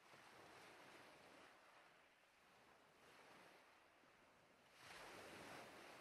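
Near silence: a faint, soft airy hiss that swells and fades a few times.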